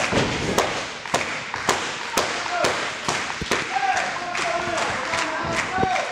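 Sharp knocks and thuds in a steady rhythm, about two a second, with shouting voices in the second half.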